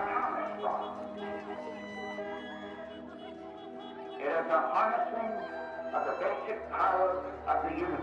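Music with long sustained tones, with a man's voice over it from about four seconds in, reading President Truman's radio address announcing the atomic bombing.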